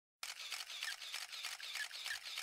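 Faint hiss with rapid, evenly spaced clicks, starting a moment in.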